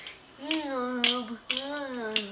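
A young child singing a made-up tune in drawn-out, wavering notes, starting about half a second in, with short sharp clicks between the notes.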